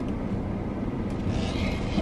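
Low, steady rumble of a car's engine running, heard inside the cabin, with a faint hiss joining about a second in.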